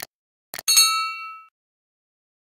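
Subscribe-button animation sound effect: a mouse click at the start and another about half a second in, followed at once by a bright bell ding that rings for under a second and fades.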